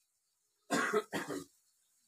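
A man coughing twice in quick succession, about a second in: two short, loud coughs.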